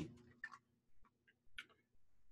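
Near silence, broken by a few faint short clicks.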